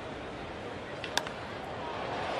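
Steady ballpark crowd noise, with one sharp crack of a baseball bat hitting the ball about a second in.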